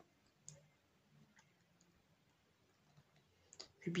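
Near-quiet room tone with a few faint, scattered clicks. A woman's voice starts speaking near the end.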